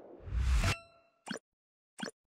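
Channel logo sting sound effect: a rising whoosh with a deep bass hit cuts off sharply into a short ringing chime. Two short pops follow, one about a second later and one at the end.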